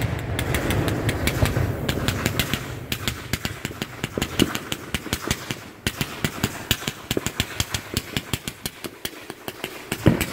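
Multi-shot consumer fireworks cake firing at close range: a dense rush of launches and bangs at first, then a rapid string of sharp cracks, about four a second, with a brief break partway through.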